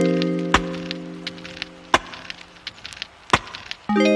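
Background music: a held chord fades slowly and a new chord is struck near the end, with sharp clicks about every second and a half and lighter ticks between them.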